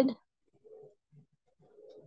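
A bird calling faintly: a few short, low calls in the pause after the speaking stops.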